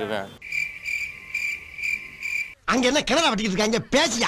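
A cricket-chirp sound effect: a high, steady chirp pulsing about twice a second for about two seconds, cleanly cut in over silence, the comic 'crickets' cue for an awkward pause. A man's voice follows for the last second or so.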